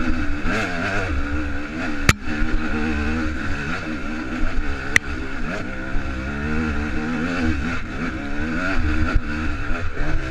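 250 cc enduro dirt bike engine running hard under the rider, its pitch rising and falling with the throttle. Two sharp knocks come through, about two seconds in and again about five seconds in.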